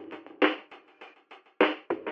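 Background music: a drum part of quick separate hits, loudest about half a second in and again near the end.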